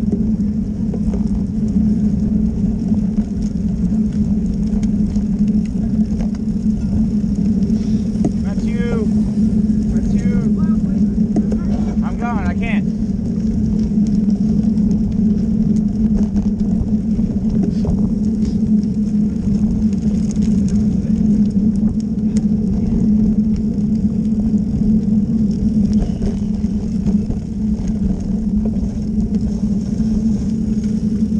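Steady wind and road rumble on a camera riding on a road bike in a group of cyclists, with a few short calls from riders' voices about nine to thirteen seconds in.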